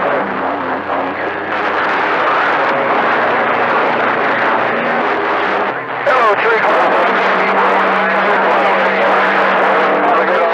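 CB radio receiver on channel 28 picking up long-distance skip transmissions: garbled, unintelligible voices buried in heavy static, with steady heterodyne whistles. One transmission drops out just before six seconds in and another keys up straight after.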